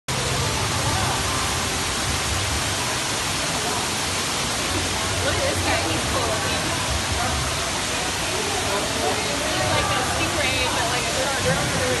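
Steady rushing background noise with faint, indistinct voices of people nearby, growing a little more noticeable about halfway through.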